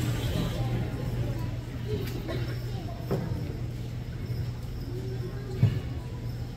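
Low room noise in a large gymnasium: faint audience murmur and a couple of small knocks over a steady low hum.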